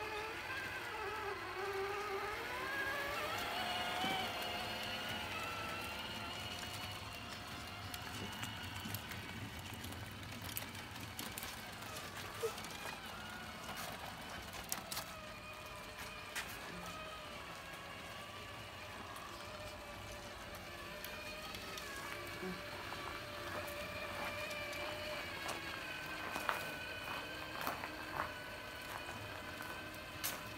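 Electric drive motors and gearboxes of radio-controlled big-rig trucks whining as one truck tows another under load, several thin tones rising and falling in pitch with speed. Scattered short clicks and ticks, more of them in the middle and near the end.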